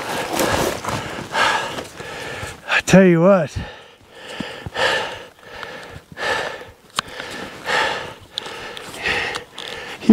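A man breathing hard in heavy, gasping breaths about once a second, with a short pained groan about three seconds in: he is winded and hurt after a fall on the rocks. A single sharp click comes near the seven-second mark.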